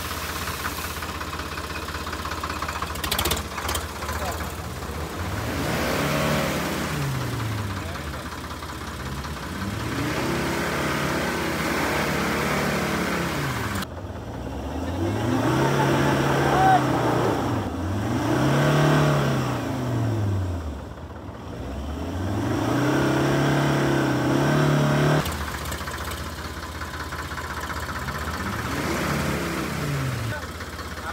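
Diesel engine revved up and down over and over, its pitch rising and falling about every two seconds, as a vehicle strains to pull free of deep mud.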